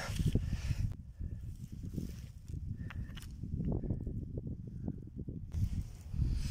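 Loose granite and quartz stones being shifted and picked up by hand on a rubble pile, with a few scrapes and light knocks of stone on stone, over a steady low rumble of handling noise on the phone's microphone.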